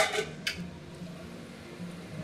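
Stainless-steel lid set onto a metal kadai: a sharp clink of metal on metal, then a lighter clink about half a second later, followed by only a faint low hum.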